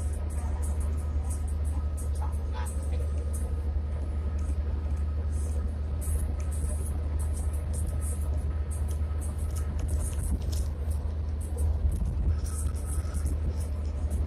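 Car cabin noise at highway speed: a steady low rumble of tyres and engine, with a faint steady whine above it and scattered light high ticks.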